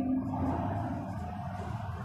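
A man's drawn-out word fades out in the first half-second, leaving a low, steady room hum.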